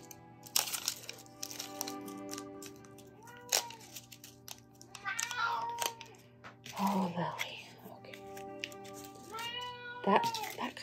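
A dog whining a few times in short, high cries that rise and fall, over steady background music, with light taps and rustles of paper flowers being set down on the table.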